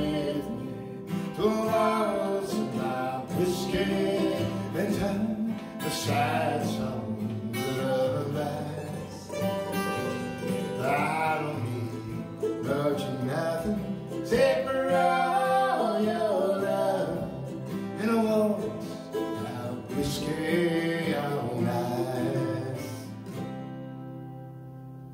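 Acoustic folk song with sung vocals over a strummed acoustic guitar and an F-style mandolin. The song ends near the end on a final chord left ringing.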